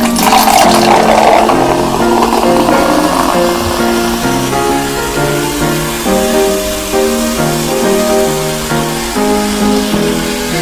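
Cola poured from a can into a glass mug over background music: a splashing pour at the start that settles into a softer fizzing hiss as the foam rises.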